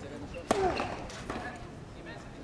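Tennis racket striking the ball on a serve: one sharp crack about half a second in, with a short grunt from the server right after it. A fainter knock follows under a second later.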